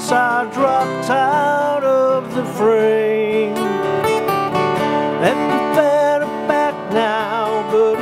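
Two acoustic guitars playing a country-style song: one strums chords while the other plays lead fills high up the fretboard, with bent notes.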